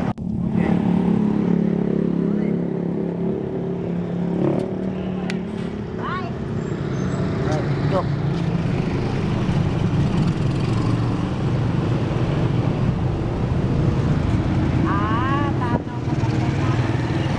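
A small motor vehicle engine idling steadily close by, amid street traffic.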